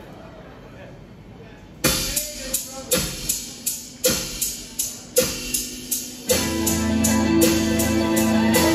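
A live rock band starting a song: after a moment of low room murmur, a steady percussive beat comes in about two seconds in, at roughly three hits a second, and electric guitars and bass join with a full sustained sound about six seconds in.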